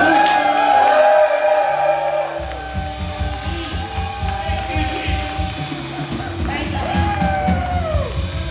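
Live worship band playing: long held notes over a sustained bass line, with drums coming in about two and a half seconds in on a quick, steady beat.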